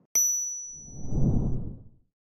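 Sound effects of an animated end card: a sharp ding that rings and fades over about a second and a half, overlapped by a low rumbling swell that rises and dies away near the end.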